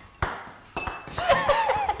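A thrown game piece strikes something hard with a sharp ringing ping about a quarter second in, followed by a second, lighter clink; voices start up near the end.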